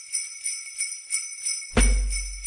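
Sleigh bells shaken in a steady beat, about three shakes a second, opening a recorded Christmas song; a deep bass note and fuller music come in near the end.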